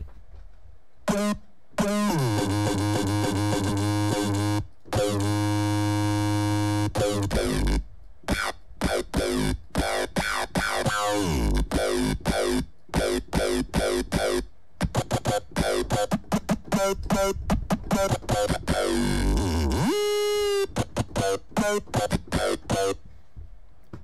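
Serum wavetable software synthesizer playing an aggressive, buzzy patch that is being auditioned. A long held note begins with a falling pitch sweep. About eight seconds in, it turns into fast chopped, stuttering stabs with a rising glide near the end.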